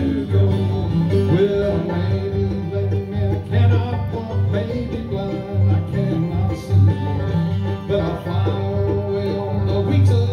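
Live bluegrass band playing an instrumental passage without vocals: banjo, fiddle, acoustic guitar, mandolin and upright bass, with a steady bass pulse under the picking.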